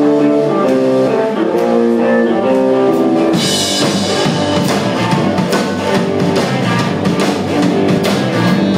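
Live rock band: an electric guitar plays a riff of separate notes on its own, then the drum kit with cymbals and the rest of the band come in about three and a half seconds in and play together.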